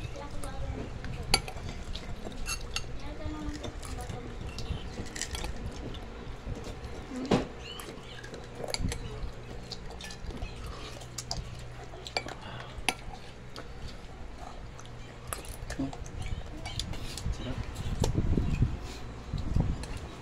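Scattered clinks and knocks of a spoon and plates during a meal, irregular and sharp, over a steady low hum. A louder low rumble comes near the end.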